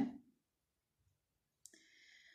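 A woman's spoken word trails off, then a pause of near silence. Near the end comes a soft mouth click and a faint in-breath as she gets ready to speak again.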